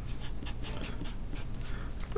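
Faint, rhythmic scratching strokes of a Sharpie felt-tip marker writing on paper, a few strokes a second.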